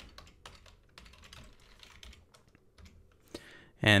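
Computer keyboard typing: quiet key clicks, irregular and spread out.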